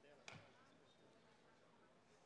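Near silence: faint murmur of a large hall, with a brief snatch of a voice a moment after the start.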